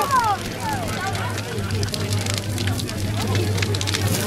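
Large bonfire of piled branches crackling, with many sharp pops. People's voices are heard near the start, over a steady low rumble.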